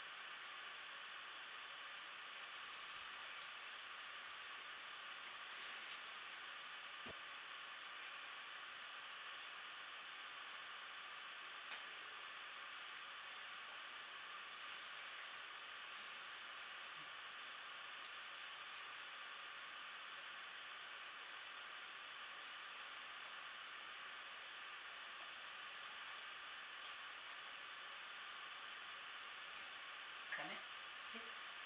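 Quiet steady hiss of room tone, broken three times by a brief high-pitched squeal that rises and falls, a few seconds in, midway and again about three quarters of the way through, with a couple of faint clicks.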